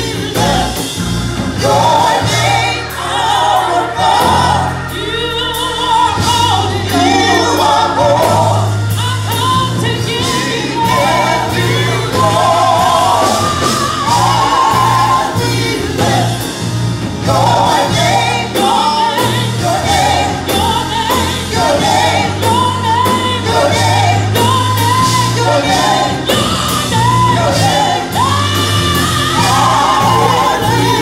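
Gospel praise team singing in harmony through microphones, backed by instruments with sustained bass notes and a steady beat.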